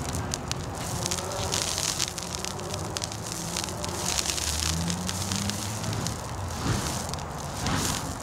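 Burning fire poi being spun, their flaming wicks whooshing in swells that rise and fade every second or so, with sharp crackling throughout.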